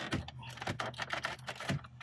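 Plastic trim-removal tool prying at the plastic dash trim around a Chevy Aveo's radio, making a quick, irregular run of sharp plastic clicks and snaps as the tool works under the trim and its retaining clips give.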